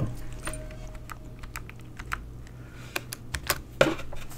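Typing on a computer keyboard: a run of irregular key clicks, with the loudest click near the end.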